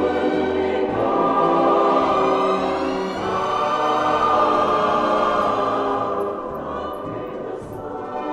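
Easy-listening orchestral music with a choir singing long held chords over the strings; the music softens and thins in the last two seconds.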